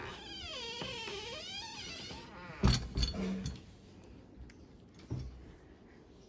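A cat giving one long meow of about two seconds, its pitch wavering, dipping and rising again. Then come a few knocks and thumps, the loudest about two and a half seconds in.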